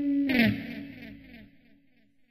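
Electric guitar ringing out a final sustained note of a blues lick; about a third of a second in the note slides sharply down in pitch with a scrape of the strings and then dies away within about a second.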